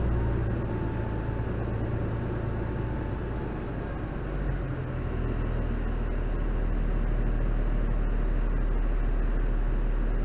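Fire engine's diesel engine running steadily, driving its pump with a charged hose line out. The low rumble deepens and grows a little louder about halfway through.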